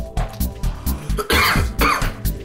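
A man coughs twice, a bit over a second in, over electronic background music with a steady beat. The coughing is a reaction to the burn of Carolina Reaper pepper jerky.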